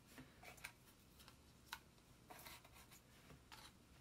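Near silence, with a few faint, brief rustles and ticks of small paper cards being handled.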